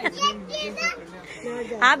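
Speech only: a young child's high voice in the first second, then a woman starts talking near the end.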